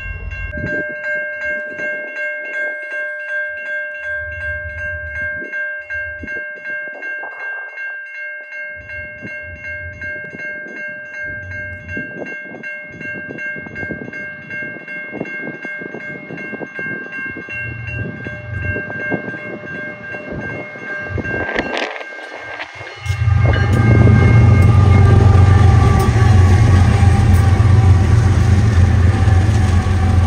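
Grade-crossing warning bell ringing with even repeated strikes while freight cars clatter over the rails. About 23 seconds in, the lead BNSF diesel locomotives pass close with a loud, heavy engine rumble that drowns out the bell.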